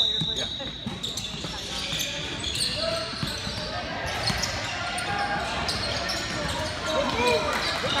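Indistinct voices, with scattered short thuds and knocks throughout; the voices grow busier in the second half.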